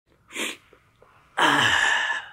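A person sneezing: a short breath in, then a loud, sudden sneeze about a second and a half in, falling in pitch as it fades.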